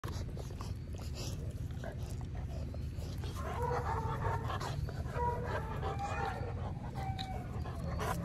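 A dog whining: a run of short, high-pitched whines starting about three and a half seconds in, over a steady low rumble.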